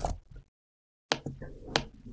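A few sharp clicks from a computer keyboard and mouse as text is typed and a button is clicked. After a clatter at the start comes a short stretch of dead silence, then two distinct clicks in the second half.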